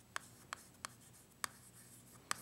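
Chalk on a chalkboard while writing: four short, sharp taps of the chalk against the board within about a second and a half, over a quiet background.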